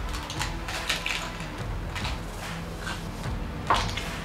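Hard taco shells crunching as two people bite into them: a scatter of short crisp cracks, the sharpest one near the end.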